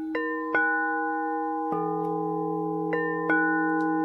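Bells struck one after another, about five strikes, each left ringing so the notes overlap into a sustained, chord-like drone.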